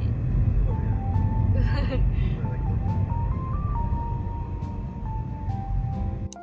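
Steady low rumble of a car's engine and tyres heard inside the cabin, under background music with a simple stepping melody.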